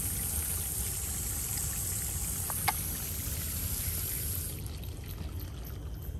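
Water trickling steadily along a wooden drainage trough, fading out near the end. A single brief sharp sound cuts in about two and a half seconds in.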